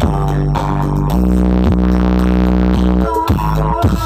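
Loud bass-heavy dance music played through the ME Audio truck-mounted sound system's stacked speaker cabinets. About a second in the beat gives way to one deep bass note held for about two seconds, then the beat comes back.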